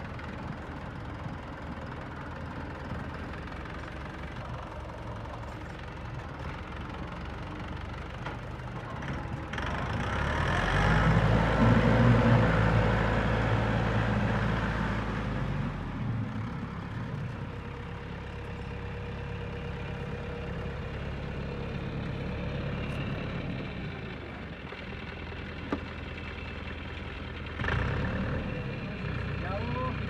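Dong Feng DF-504 farm tractor's diesel engine running steadily as the tractor drives about. It grows loud about ten seconds in as the tractor comes close, then drops back to a steady run.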